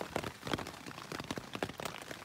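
Heavy rain falling hard on a tent's rain fly, heard from inside the tent as a dense, irregular patter of drop hits.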